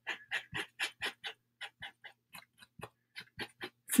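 Light, quick taps of a Posca acrylic paint-pen tip dabbing on a wooden cutout, about five a second at first, then sparser and irregular.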